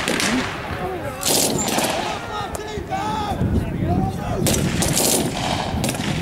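Irregular rifle shots and short bursts of machine-gun fire, several shots close together in places, with people's voices calling in the gaps.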